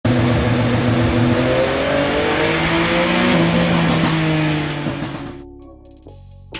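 Yamaha MT-09's three-cylinder engine running loud on a dyno, its pitch held nearly level, creeping up a little with one small step up about three seconds in, as when a pit speed limiter holds the bike at a set road speed. The sound fades out about five seconds in.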